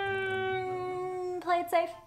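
A woman's long, drawn-out hesitant "hmmm", held on one note that sinks slightly in pitch and stops about a second and a half in, followed by a short spoken word.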